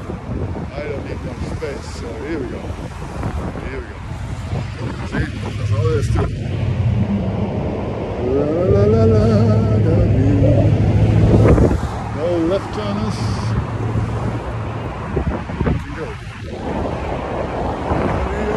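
City street traffic with wind buffeting the microphone; a nearby vehicle's engine hum builds up, is loudest about two-thirds of the way through, then cuts off suddenly.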